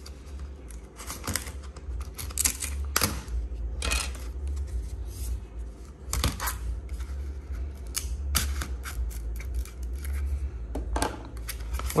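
Plastic back cover of a Huawei R219h pocket Wi-Fi router being pried and unclipped by hand: a run of irregular sharp clicks and scrapes.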